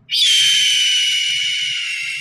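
A bright, high-pitched ringing sound starts suddenly and fades out slowly over about three seconds.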